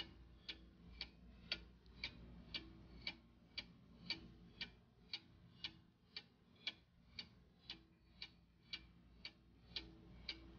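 Countdown-timer clock ticking sound effect, faint and even at about two ticks a second.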